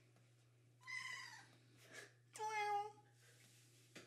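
Grey tabby cat meowing twice: a short, higher meow that falls in pitch about a second in, then a louder, longer, lower meow a little past the two-second mark.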